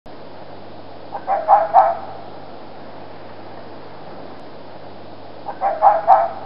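A person's short laugh, a few quick bursts about a second in and again near the end, over a steady background hiss and low hum from the recording.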